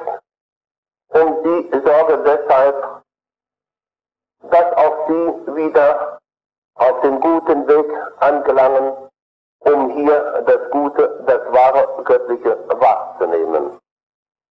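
A man speaking German in short phrases, with clean silent pauses of about a second between them, from a tape recording.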